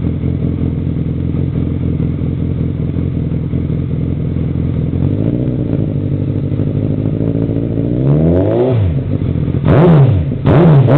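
Suzuki B-King's 1340 cc inline-four running through twin Two Brothers aftermarket mufflers: a steady idle, then throttle blips, a small rev about halfway, a bigger one near the end, and a sharp, loud rev right at the end.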